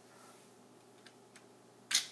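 Two faint plastic clicks, then a sharp click near the end as a hand pushes the Lego lever that starts the chain-reaction contraption.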